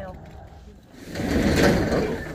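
A metal roll-up storage unit door rolling along its track: a loud rushing rattle that starts about a second in and lasts about a second.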